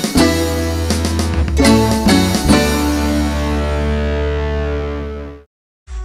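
Instrumental jingle music striking a few chords, the last one held and fading until it cuts off about five seconds in, then a brief silence before another jingle begins.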